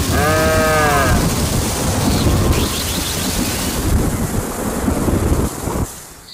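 One bleating farm-animal call in the first second, its pitch rising and then falling, over a steady rushing noise like storm wind and rain that fades out near the end.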